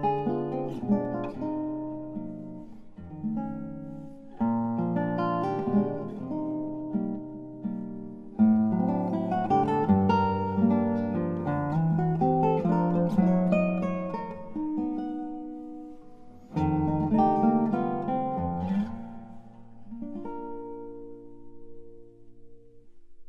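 Solo classical guitar playing the closing phrases of a mazurka live, with plucked melody over bass notes, ending on a final chord about 20 seconds in that rings and dies away.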